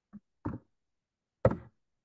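Three short soft knocks, the last and loudest about a second and a half in.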